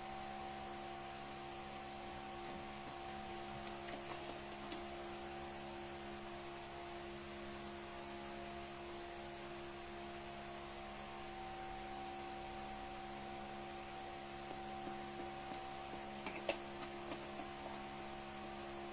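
A steady low electrical hum, with a few faint clicks and knocks about four seconds in and again near the end.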